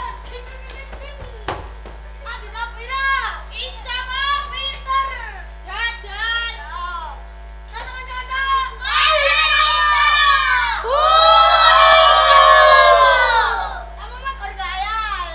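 Children's voices calling and chanting in short rising-and-falling phrases as part of a traditional Javanese children's game (dolanan anak). From about nine seconds in, many children shout together, loudest for the last few seconds, over a steady low electrical hum.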